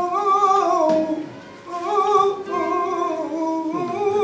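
Male flamenco singer singing a fandango in long, wavering held notes, pausing for breath a little over a second in before the next phrase.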